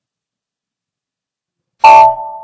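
Silence, then near the end a sudden loud computer chime, a few clear tones that ring and fade over about a second: the software's alert sound as the SAP document posts.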